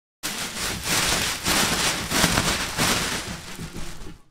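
Loud crackling rustle of plastic packaging being torn and crumpled close to the microphone. It cuts in sharply just after the start and stops just after the end.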